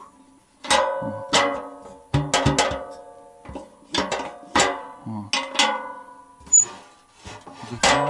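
Background music of plucked guitar notes, one or two sharp notes a second, each ringing out and fading.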